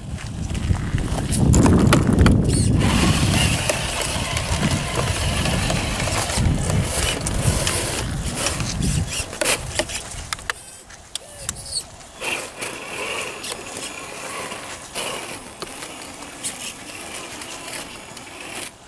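Traxxas TRX-4 RC crawler's electric motor and drivetrain running as it drives over grass and slushy snow, loudest in the first half, then quieter with scattered clicks.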